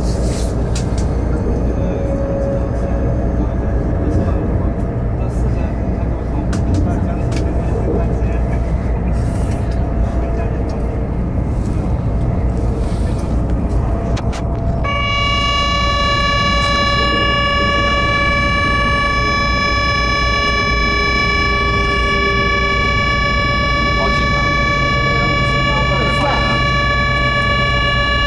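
Train running on its rails, a steady low rumble heard from inside the carriage, with scattered clicks. About fifteen seconds in, a steady high horn tone on a single note starts and holds on.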